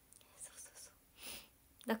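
A young woman's soft breaths, twice, faint and hushed, then her voice starts again right at the end.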